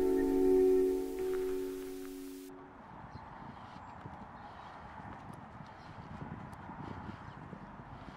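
An ambient music drone with a steady hiss over it, both cutting off about two and a half seconds in. Then faint outdoor ambience with light irregular footsteps on a path.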